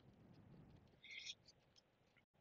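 Near silence, with one faint, short high sound a little after a second in.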